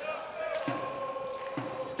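Football kicked twice on a grass pitch, two dull thuds about a second apart, over a steady held tone.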